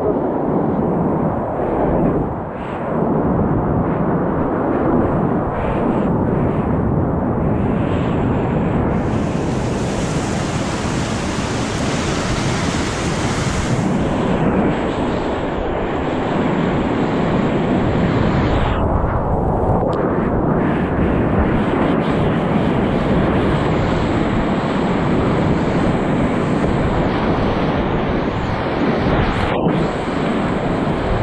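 Steady roar of grade IV whitewater rapids around a kayak, water rushing and splashing close by. A brighter hiss comes in about nine seconds in and drops away some five seconds later.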